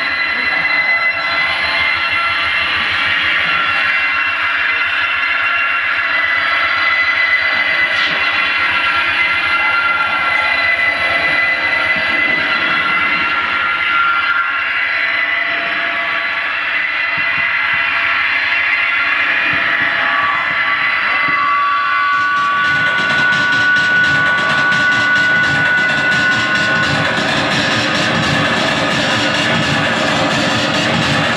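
Live harsh noise music played on electronics and effects pedals: a loud, dense wall of noise with steady high tones held above it, turning fuller and rougher about three-quarters of the way through.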